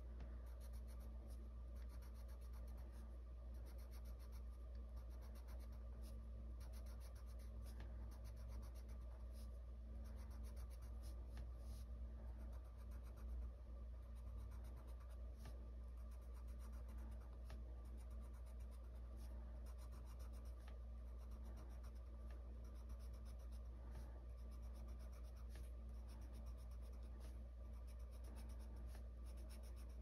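Colored pencil scratching on paper in quick, repeated short strokes as leaves are colored in, faint over a low steady room hum.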